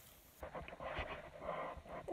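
Curling ribbon drawn hard over an open scissor blade, a dry scraping rustle starting about half a second in and running in uneven strokes, with light clicks of handling.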